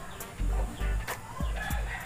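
A rooster crowing, one arching call in the second half, over background music with a steady beat.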